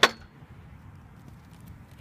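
One sharp knock right at the start as the camera is set down on a hard surface, with a brief metallic ring, followed by quiet background noise.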